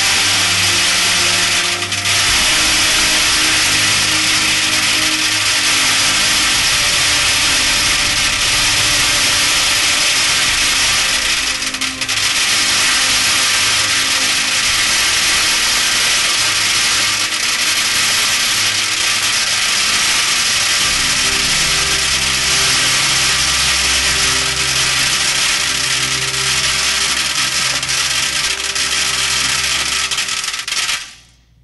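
A continuous torrent of metal BBs pouring onto a tin can, a loud, dense metallic rattle with no break. Each BB stands for 10,000 lives, and this unbroken stream stands for the abortions since 1973.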